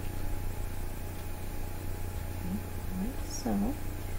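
A steady low hum runs throughout, with a brief murmur of a voice near the end.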